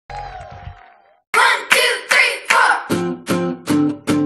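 Dance music for children: a short soft tone that fades out, a brief gap about a second in, then a beat of sharp, evenly spaced notes, about two and a half a second.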